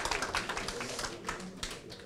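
Light, scattered hand clapping from an audience, a few sharp irregular claps at a time.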